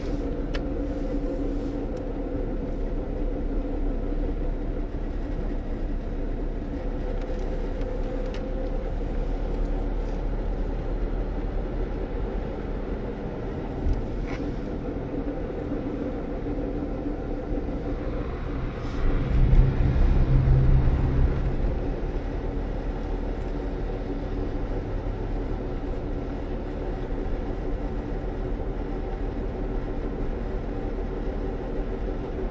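Car driving, heard from inside the cabin: a steady low engine and tyre rumble. About two-thirds of the way through it swells louder for about three seconds, with a deeper engine note and a rush of road noise, then settles back.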